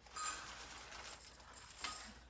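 Dry brown rice poured from a bag into a metal measuring cup, the grains pattering and rattling in a steady stream that slowly thins, with a small clink near the end.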